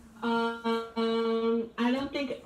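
A person singing one steady note, broken into three or four held syllables on the same pitch.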